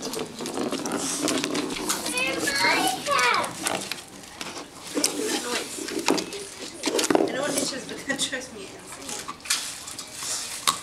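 Young children's voices chattering and calling out at play, not as clear words, with scattered light clicks and knocks between them.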